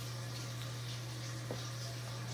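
Steady low hum under a faint hiss like trickling water, with a single light tap about one and a half seconds in.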